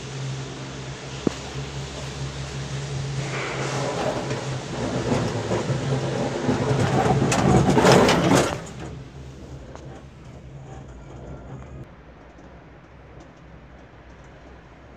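Detachable six-seater gondola cabin running through its station, with a steady low machinery hum under rumbling and rattling that builds to a peak about eight seconds in. The noise then drops sharply as the cabin leaves the station onto the rope and runs more quietly. A single sharp click sounds about a second in.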